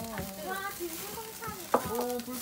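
Pork sizzling over a charcoal grill as it is turned with metal tongs, with one sharp click a little before the end.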